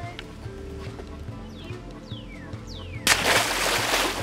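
Background music with a steady low beat and a few falling whistle-like glides. About three seconds in comes a sudden loud splash that fades over a second or so: an alligator being released into the lake.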